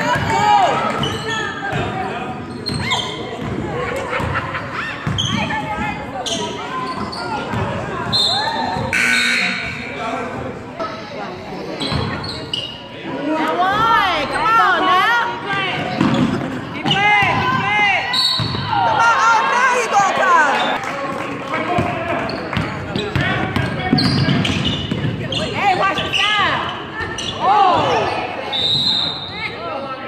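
Basketball bouncing on a hardwood gym floor during play, with sneakers squeaking in short, arching squeals several times in the middle and near the end. Voices call out in the echoing hall.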